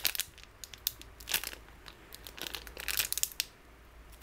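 Clear plastic wrapper crinkling as fingers squeeze a packaged foam squishy toy through it, in a few short spells of crackling with quieter pauses between, dying down near the end.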